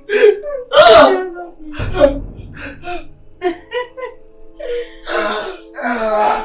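A woman crying in distress, sobbing, gasping and wailing, with a loud sharp gasp about a second in. A low thud comes about two seconds in.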